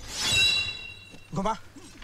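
Sword blades clash in a loud metallic clang that rings for about half a second, followed by a man's short shout.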